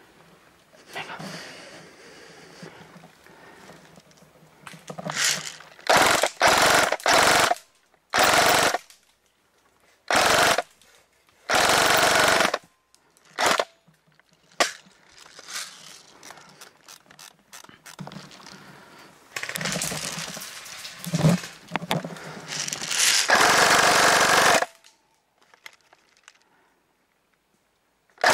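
Airsoft electric rifle firing in repeated short full-auto bursts, each a fraction of a second to about a second and a half long, in two clusters with quiet gaps between them.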